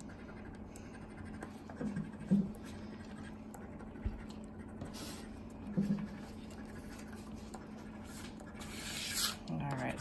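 A coin scratching the latex coating off a paper scratch-off lottery ticket in short rubbing strokes. A few brief low vocal sounds break in, the loudest near the start.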